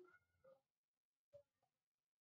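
Near silence, with one faint pitched call that rises and falls, ending about half a second in, and a faint click a little past the middle.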